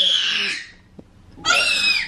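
A toddler's shrill, high-pitched squeals: one long squeal that ends about half a second in, then a second, shorter one from about a second and a half in.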